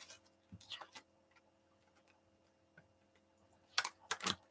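A few faint, soft clicks and taps of tarot cards being handled and laid down, over a faint steady hum.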